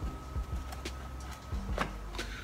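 Metal mud knife scraping and clicking against a wooden door jamb while smoothing wood putty: a few short scrapes, the strongest about a second and a half in, over faint low background music.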